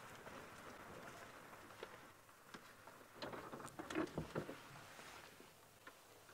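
Quiet bush ambience with faint scattered ticks and a few short, soft calls about three to four and a half seconds in.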